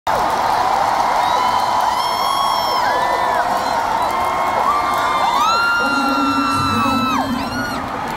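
Arena crowd cheering, with many long high 'woo' whoops and screams rising and falling over each other. A low held note comes in about six seconds in.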